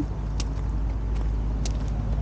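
Steady low outdoor rumble with two short faint clicks a little over a second apart.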